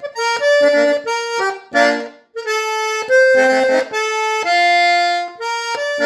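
Hohner Erica diatonic button accordion playing a slow melody note by note, with a short break about two seconds in and a long held note near the end.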